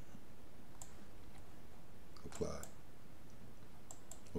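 A few faint, sparse computer mouse and keyboard clicks as values are entered and applied, with one slightly louder short sound about two and a half seconds in.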